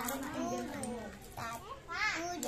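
Young children's voices, talking and chattering.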